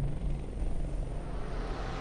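A low, steady rumbling drone from a cinematic logo sound effect, with a faint high tone entering near the end.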